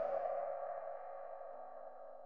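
A ringing synthesized tone, an edited-in dramatic sound effect, holding steady and fading slowly away.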